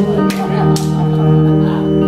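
Solo Telecaster-style electric guitar strumming the opening chords of a country song, a few strokes early on and then the chord left ringing.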